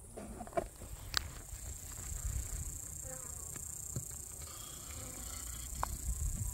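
A steady high-pitched insect chorus, with a low rumble underneath and a couple of sharp clicks as the wooden hive is worked with a hive tool.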